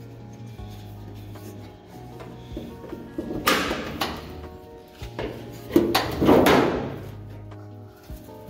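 Old steel pickup hood being pried up and lifted open: two rasping metal scrapes and creaks, about three and a half and six seconds in, the second louder, over steady background music.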